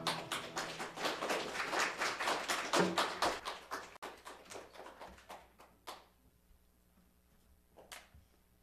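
A congregation clapping, the claps thinning out and dying away after about five seconds. Then there are a couple of light knocks as an acoustic guitar is set down.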